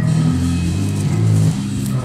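Live band music carried by loud, low held bass notes that shift pitch a couple of times.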